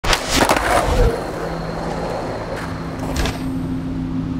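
Skateboard rolling on pavement with several sharp clacks, most of them in the first second, over a steady low hum that sets in about a second in.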